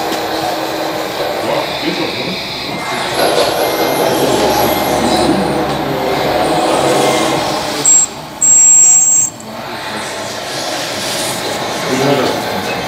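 Steady, busy hall noise with indistinct voices in the background. About eight seconds in, a loud high-pitched tone sounds twice: a short blip, then a longer one lasting about a second.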